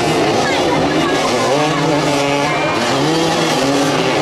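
Several motoball motorcycles revving at once, their engine notes rising and falling in overlapping glides.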